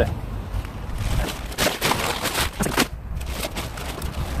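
Plastic bags of pine-bark mulch crinkling and scraping as a full bag is pulled out of a car boot, the crackling thickest between about one and a half and three seconds in.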